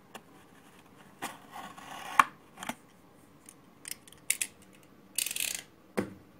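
Utility knife blade cutting into a cardboard oil filter box: a scraping slice about a second in that ends in a sharp snap, a few separate clicks, and a second short slice near the end.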